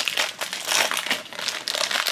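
Foil blind-bag wrapper crinkling as hands work it open: a dense run of quick, irregular crackles.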